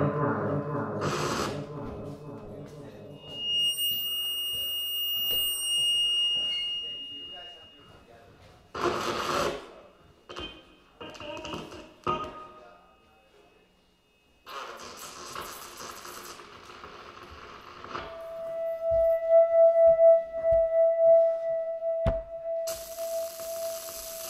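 Live experimental electronic music: a pitched drone fades out, then a high held tone, separate bursts of hiss-like noise with near-quiet gaps between them, and a steady held tone from about three-quarters of the way through, broken by a sharp click and a loud burst of noise near the end.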